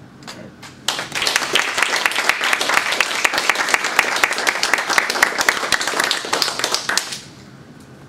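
Audience applauding: dense clapping that starts sharply about a second in and dies away about a second before the end.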